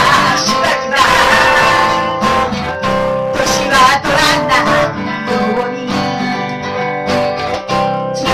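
Strummed acoustic guitar accompanying a woman singing a pop song through a microphone, performed live.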